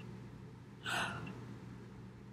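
A woman's short, sharp intake of breath about a second in, over a faint steady low hum.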